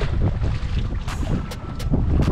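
Wind buffeting the microphone in a dense low rumble, with a few short clicks scattered through it.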